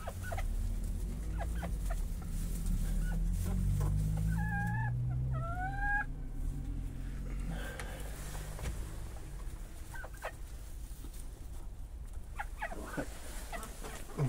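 Booted bantam chickens in a straw-bedded coop: two short, pitched chicken calls, the second rising, come about four and a half and five and a half seconds in, over a low steady rumble and faint scattered clicks.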